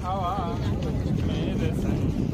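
Sea wind buffeting the microphone with a steady low rumble, under the voices of a crowd; a wavering voice stands out in the first half second.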